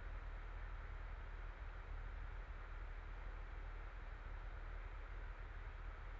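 Faint, steady hiss with a low hum and no distinct events: background noise of the voice-over recording in a pause between narration.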